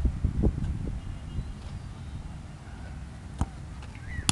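Low, uneven rumble of wind on the microphone in open air, with a few faint knocks and one sharper knock a little before the end.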